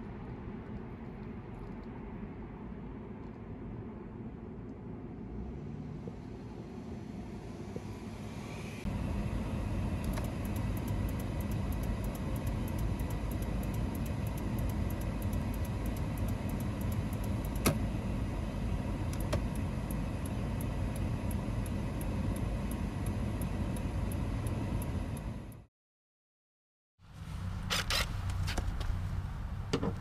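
Toyota 4Runner's 4.0-litre V6 idling in Park, at first from outside by the front of the truck, then louder from inside the cab. Faint rapid clicking from the turn-signal flasher runs through it: hyper flashing caused by a dead passenger-side turn-signal bulb.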